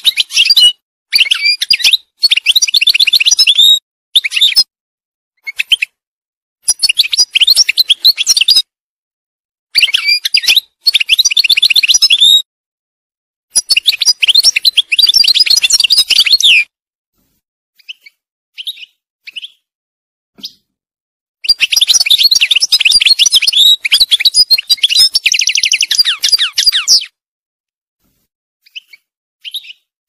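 European goldfinch singing: phrases of fast twittering a few seconds long, broken by short pauses. The longest phrase comes in the second half and holds a fast trill, followed by a few short, soft notes near the end.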